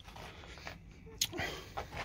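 A pause in a man's talk: low background noise with a single sharp click a little over a second in, followed by a faint murmur of his voice.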